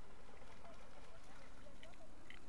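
A border collie splashing faintly as it wades out of shallow river water onto the shore, over a steady low rumble.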